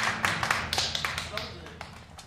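Sharp hand claps and taps in an even rhythm, with a low hum of voices underneath at first, thinning out and growing fainter.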